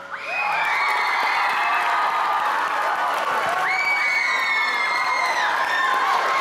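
Young audience cheering and screaming, with long high-pitched shrieks and whoops held a second or two each over the crowd noise, starting just as the rock song dies away.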